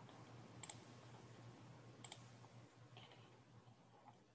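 Faint computer mouse clicks, two quick double clicks about a second and a half apart and a softer click near the end, starting a PowerPoint slideshow, over a low steady hum.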